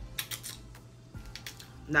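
Eating sounds of boiled shrimp: a quick cluster of crisp clicks and crackles, then a few more about a second in, from biting into the shrimp and handling its shell.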